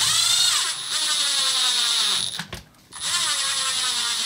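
Electric screwdriver driving screws into an RC truck's chassis: a motor whine that slowly drops in pitch as each screw tightens. It runs twice, stopping briefly about two and a half seconds in and starting again.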